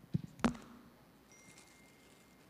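Handling noise on a handheld microphone: a few soft knocks, then one louder knock with a brief ring about half a second in, as gift items are picked up from the table.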